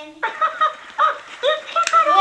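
A high-pitched voice in short repeated bursts, about two a second, each sliding up and down in pitch.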